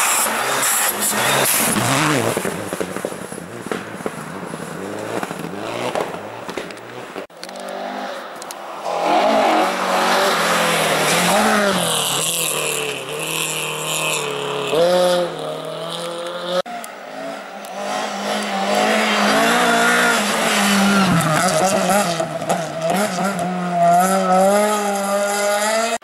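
Rally cars passing one after another at speed on a snowy stage, engines revving high and dropping through gear changes, with hissing noise from the tyres on the snow. The sound jumps abruptly twice, about 7 and 17 seconds in, as a new car's run begins.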